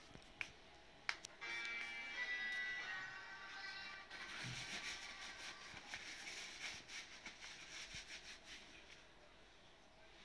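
A short, high-pitched melody plays for about two and a half seconds, starting a second or so in. Then a paper napkin rustles and crinkles as hands are wiped with it, fading near the end.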